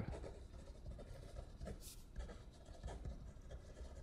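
A pen writing on a sheet of paper: faint, short scratching strokes as words are written out.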